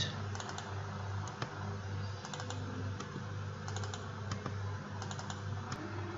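Computer mouse clicks and key presses, in quick clusters of two or three about once a second, from supports being selected and deleted one by one, over a steady low hum.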